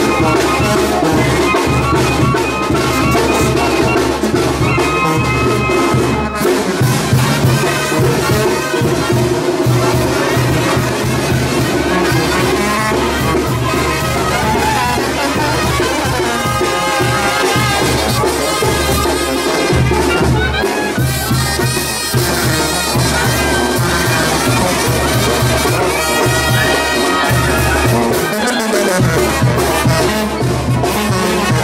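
A brass band with tuba and trumpets playing a dance tune, with a steady, repeating bass line.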